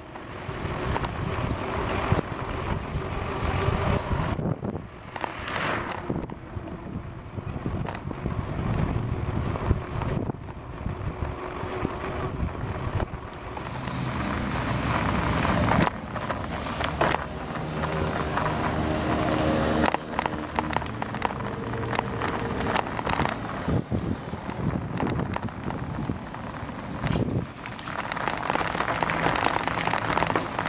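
Wind buffeting the microphone of a handlebar-mounted camera on a moving bicycle, with road noise and frequent small knocks and rattles. A low engine hum from a motor vehicle is heard for several seconds around the middle.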